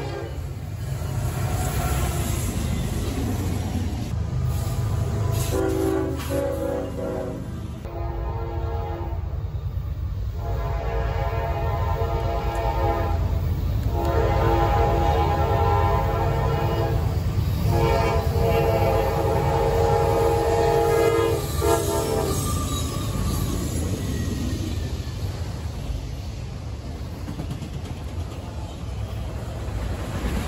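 Diesel locomotive air horn sounding five long multi-tone blasts through the middle, over the steady rumble of an approaching train. Afterwards the freight cars rumble past close by.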